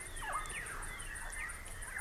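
Outdoor ambience of a radio drama: a steady high insect pulse, about five a second, with several short falling bird chirps over it.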